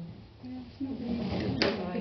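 People talking in a small meeting room, with a single sharp knock about a second and a half in.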